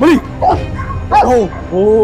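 Dogs barking, a few barks about half a second apart, in a tense pit bull and Rottweiler face-off, with a longer drawn-out pitched sound starting near the end.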